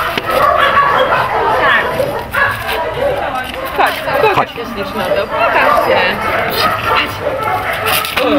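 Dogs barking, mixed with people talking.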